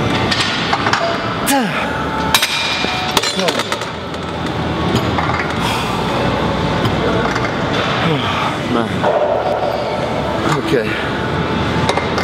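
A weightlifter straining through the last reps of a wide-grip cable row: short falling grunts and heavy breaths, with a few sharp metallic clinks from the machine.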